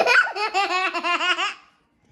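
A young child laughing: a quick run of high-pitched ha-ha-ha pulses that stops about one and a half seconds in.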